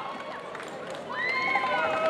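Public-address announcer's voice echoing away in a large sports hall. About a second in, another distant, sustained voice rises over the hall's murmur.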